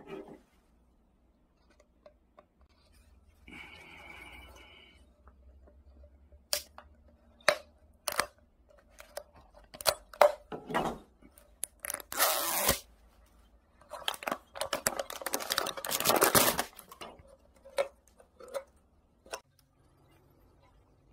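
A plastic label being peeled and torn off a PET drink bottle by gloved hands, with sharp crackles of the plastic. There is a short rip about twelve seconds in and a longer tearing stretch a little later.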